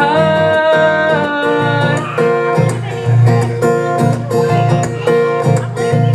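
Live solo acoustic guitar and voice: a sung note held for about the first second, then the acoustic guitar strummed alone in a steady rhythm.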